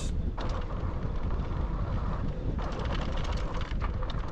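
Wind buffeting the microphone over the low rumble of fat e-bike tyres rolling on a dirt trail, with a patter of small clicks and rattles from about two and a half seconds in.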